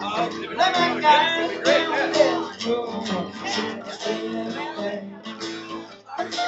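Two acoustic guitars playing together, strummed and picked, growing quieter near the end.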